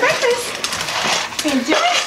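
Pugs squealing and whining excitedly, short rising and falling cries, with a few light clinks from a metal food bowl on a tile floor.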